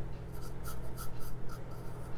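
Small paintbrush stroking water-based paint onto a plastic candlestick, a series of soft, quick scratchy brush strokes, over a low steady hum.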